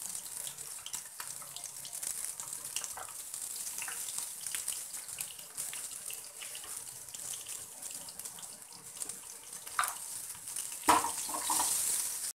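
Hot oil sizzling steadily in a metal kadhai as mustard seeds, green chillies and peanuts fry for an upma tempering, with scattered small crackles. Near the end a metal ladle stirs and clatters against the pan.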